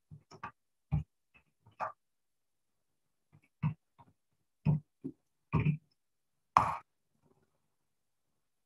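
A man's short murmurs and grunts under his breath, about a dozen brief separate sounds with pauses between them, heard over a video-call line.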